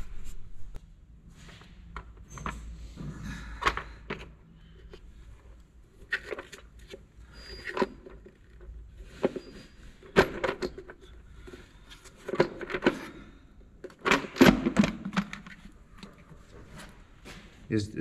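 Scattered clicks and knocks of a valve cover being set onto a VW TDI pump-injector engine's cylinder head and fastened down by hand.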